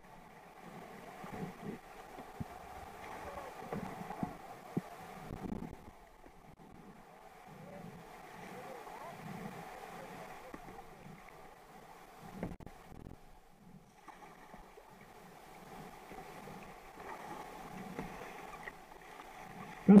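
River whitewater rushing steadily, heard from water level, with water sloshing and splashing close by and a few sharp knocks.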